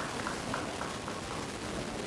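A few scattered claps from an audience, dying away within the first second, leaving a steady hiss.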